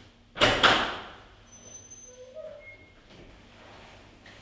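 A heavy double door swung shut, landing with two bangs in quick succession about half a second in, then dying away quickly.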